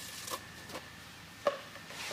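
Three faint, short taps, the sharpest about one and a half seconds in, over low room hiss.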